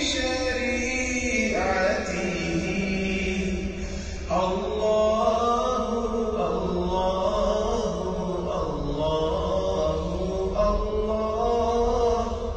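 Background vocal music: a voice chanting in long held notes that slide between pitches, in phrases of a few seconds each.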